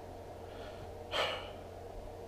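A man's single short intake of breath about a second in, over a low steady room hum.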